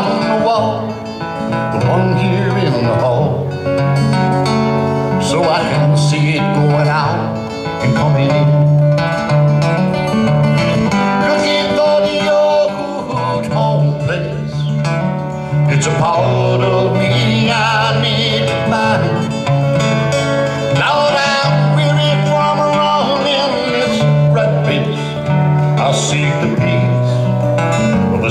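Country song performed live: acoustic guitar over a steady bass line, with melodic lines above it.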